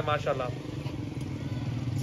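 An engine running steadily at idle, a low even hum with a fine regular pulse, left on its own once a man's voice breaks off about half a second in.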